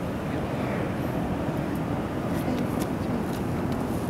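Steady low rumble of wind buffeting the camcorder microphone, with a few faint ticks in the second half.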